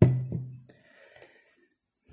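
Two knocks on a tabletop close to the microphone as something is set down: a sharp one, then a lighter one a third of a second later, with a low hum that dies away within a second.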